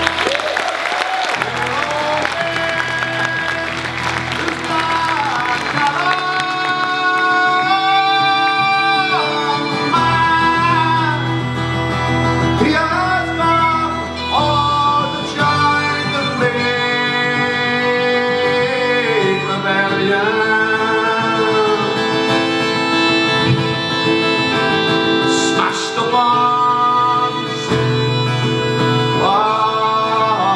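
A man singing a slow ballad live with guitar accompaniment, holding long, drawn-out notes.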